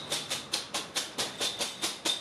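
Numbered draw tokens rattling inside a cloth draw bag as it is shaken by hand, in a quick even rhythm of about seven shakes a second.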